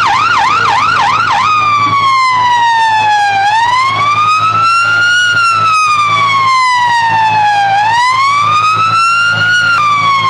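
Fire engine siren sounding a fast yelp that switches about a second in to a slow wail, rising and falling in pitch roughly every four seconds, over a steady low hum.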